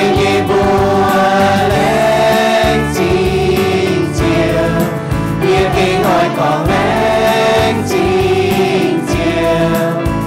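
A church worship team of men and women singing a hymn together through microphones, accompanied on electronic keyboard.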